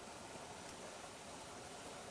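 Faint, steady hiss of background noise with no distinct event.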